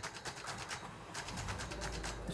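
Ford Kuga engine started with the push-button, settling into a low, steady idle hum about one and a half seconds in.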